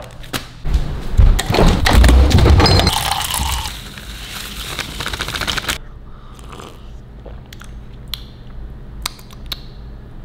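Crinkling and rustling of a small plastic sample packet being opened and handled, with clicks and knocks, loudest in the first three seconds. The sound fades over the next few seconds, leaving a quieter stretch with a few scattered clicks.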